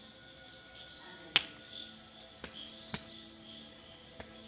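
Night insects, crickets, chirping steadily in a high pitch that swells about once a second, with a few sharp clicks, the loudest about a second and a half in.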